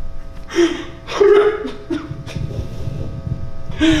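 A held keyboard chord sounding steadily in a church, with short bursts of a man's voice, unworded cries or gasps, about half a second in, about a second in, and again near the end.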